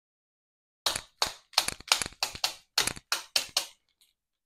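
Posca paint pen tapped sharply against a ruler about ten times in quick succession, flicking splatters of paint onto the edges of a card.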